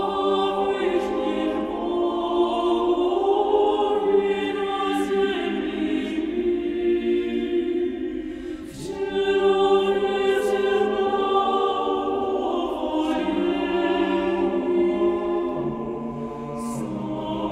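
Choir of mixed voices singing slow, sustained chords, with a brief break about nine seconds in before a new chord begins.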